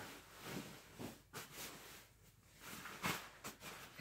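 Faint, intermittent rustling of fabric as a silk sleeping-bag liner is pulled down over a sleeping bag, with a sharper rustle about a second in and a few more just after three seconds.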